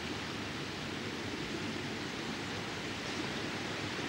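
Steady, even background hiss with no distinct events: the ambient noise floor of the scene's soundtrack.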